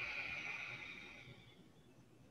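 A woman's Ujjayi (ocean) breath: a long exhale through the nose with the mouth closed and the back of the throat slightly tightened, a soft breathy whisper that fades away over about a second and a half.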